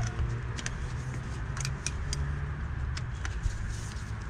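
Scattered light metallic clicks and clinks of a tool and parts being handled as a Honda D16 engine's thermostat housing is put back together, over a steady low hum.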